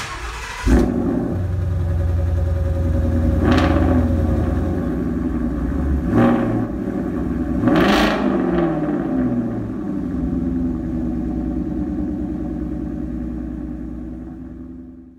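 Sixth-generation Ford Mustang engine starting with a sharp burst under a second in, then idling and revved three times, the biggest rev about eight seconds in, before fading out.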